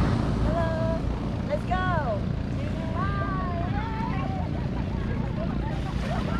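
Wind rumbling on the microphone over the surf, with several women's voices calling out in long, gliding shouts: one about half a second in, a rising-and-falling whoop about two seconds in, and more calls from about three seconds on.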